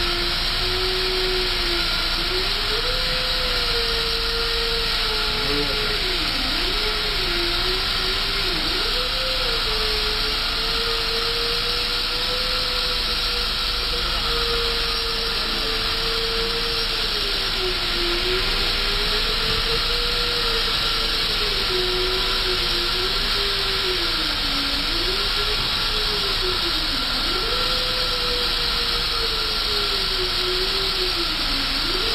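A crane's engine and hydraulics running as it lifts a cut concrete pile head: a steady hiss with a whine that wanders up and down in pitch as the load is raised.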